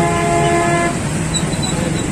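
A vehicle horn sounds one steady honk that cuts off about a second in, over a steady low traffic rumble.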